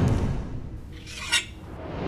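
Edited sound effect for an animated title card: a loud hit right at the start that fades away, then a short, sharp sound about a second and a half in.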